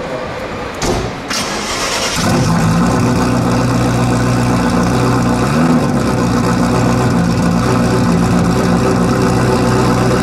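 Ferrari F40 Competizione's twin-turbocharged V8 being cranked on the starter and catching about two seconds in. It then idles steadily, with one brief small rise in revs midway.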